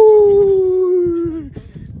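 A man's long, high 'woooo' cheer: one held note that sinks slightly in pitch and fades out after about a second and a half.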